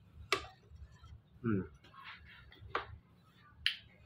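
A person eating with sharp mouth-smacking clicks, three in all, and a short hummed "mm" about one and a half seconds in.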